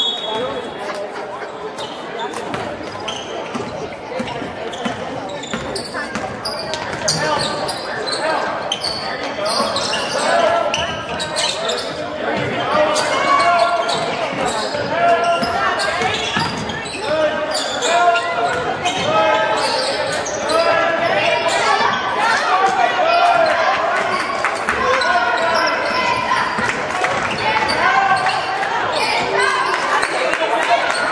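Basketball bouncing on a hardwood gym floor during play, with players and spectators calling out, all echoing in a large gym.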